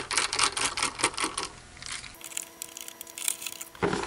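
A screwdriver backing a screw out of the oscilloscope's plastic case, heard as a quick run of sharp clicks. After that it goes quieter, with a faint steady hum.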